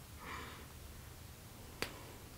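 Mostly quiet, with a faint brief rustle near the start and one sharp click near the end as a small serum dropper bottle is handled.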